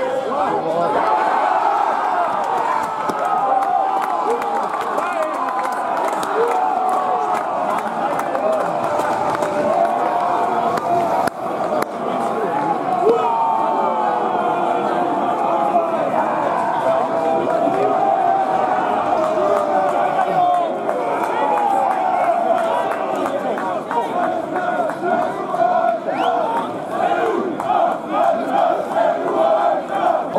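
Football supporters cheering and chanting together after a goal, many voices at once, loud and continuous.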